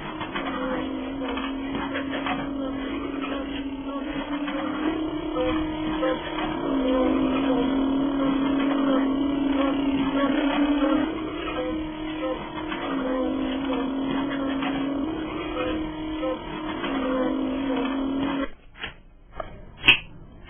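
A steady engine-like drone for a toy baggage cart driving, stepping back and forth between two pitches every few seconds. It cuts off sharply about eighteen seconds in, followed by a few sharp clicks, the loudest near the end.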